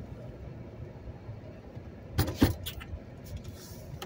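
Low, steady rumble of a car driving, heard from inside the cabin, with a brief rattle of two or three sharp clicks about two seconds in.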